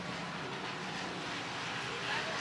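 Several dirt-track hobby stock race cars' engines running together around the oval, heard as a steady, fairly distant mixed drone of the pack.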